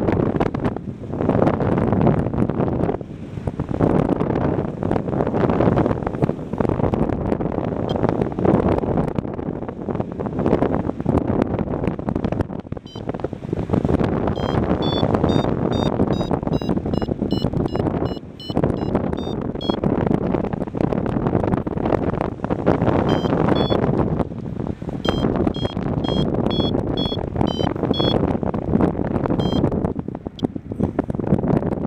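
Paragliding in flight: wind buffeting the camera microphone in uneven gusts throughout. A paragliding variometer beeps in two runs, a few short high beeps a second stepping slightly up and down in pitch, signalling that the glider is climbing in lift.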